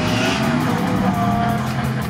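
Lada Niva engine running under load as the car drives along a grassy off-road course, with background music playing over it.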